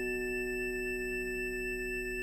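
A dense, steady chord of pure sine-like tones, high and low, held without change, as in a sustained electroacoustic texture. The faint ringing tail of a sharp struck attack fades out in the first half second.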